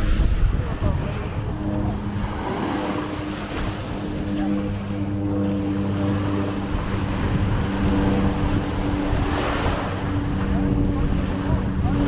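Small waves washing up on the beach with wind buffeting the microphone. Under it runs a steady low engine hum, which dips briefly about three-quarters of the way through as a wave surges in.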